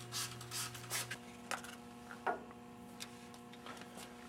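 Sandpaper rubbed by hand over a bowling ball thumb insert to rough it up for the glue: a few faint scratchy strokes in the first second. After that, only a few light clicks of handling.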